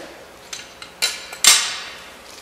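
Metal parts of a play-set clinking and clanking as a bracer is slid onto a bolt on the steel arm: a couple of soft clicks, then two sharp clanks about a second in and half a second apart, the second the loudest, each ringing briefly.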